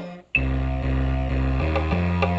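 Casio SA-75 keyboard samples played from an Akai MPC sampler's pads: after a brief break at the start, a held bass note with a chord over it comes in, the bass moving to a new note near the end.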